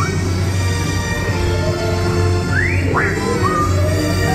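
Dramatic sci-fi ride soundtrack music over a deep steady hum, with a couple of quick rising electronic chirps near the three-second mark.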